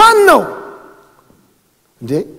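A man's single loud shouted syllable, rising then falling in pitch over about half a second, with the hall's echo trailing away after it; a second short shout starts at the very end.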